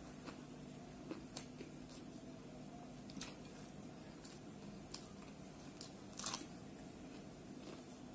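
Close-miked chewing of raw cucumber and biriyani, faint, with scattered sharp crunches and mouth clicks, the loudest cluster about six seconds in, over a faint steady hum.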